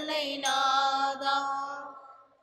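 A slow devotional hymn chanted in church, ending on a long held note that fades away near the end.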